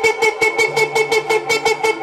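Dancehall DJ air horn sound effect played loud over the sound system: one steady horn note pulsed in rapid blasts, about eight a second.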